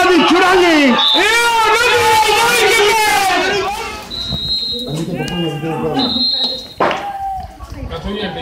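Men's voices shouting and calling in long drawn-out cries, loud for the first three or four seconds and then quieter. Short high whistle tones sound about four and six seconds in.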